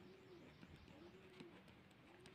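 Near silence with two faint, low calls of a bird, each rising and falling in pitch.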